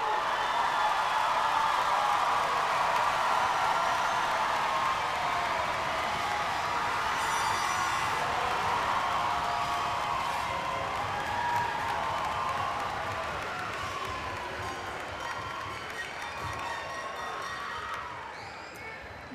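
Large crowd of graduates and audience cheering, whooping and clapping in a big arena, loudest at first and slowly dying down toward the end.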